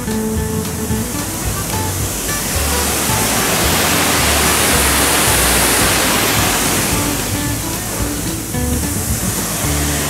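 Rushing water in a rocky mountain stream, swelling to its loudest in the middle and fading again, under background music with a steady low beat.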